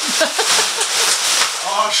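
A large tarpaulin rustling and crinkling as it is dragged off a pile of parts, with laughter breaking out near the end.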